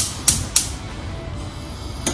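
Bosch gas hob's spark igniter clicking three times in quick succession, about three clicks a second, as a burner knob is pushed and turned to light the gas.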